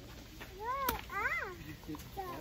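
Two short high-pitched vocal calls about half a second apart, each rising then falling in pitch, with a sharp click between them.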